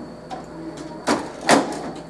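Copier's document feeder top cover being swung shut: two plastic knocks about a second and a half in, the second the louder as the cover closes.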